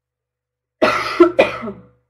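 A woman coughing twice in quick succession, starting about a second in, loud.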